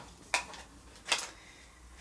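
Two short hard plastic clicks about a second apart from a Shark cordless handheld vacuum being handled, with quiet room tone between them.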